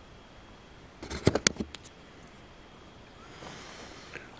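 A quick cluster of sharp clicks about a second in, over a faint steady hiss.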